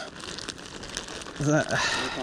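Thin plastic bag crinkling as its neck is gathered and twisted shut by hand. A voice joins about a second and a half in.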